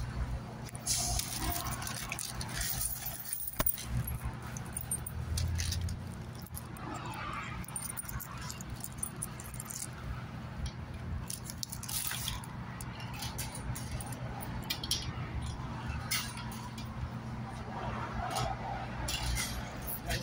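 Coins clinking as they are handled and fed one after another into a vending machine's coin slot: scattered short metallic clinks, over a steady low hum.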